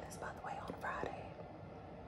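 A woman whispering a few words in the first second.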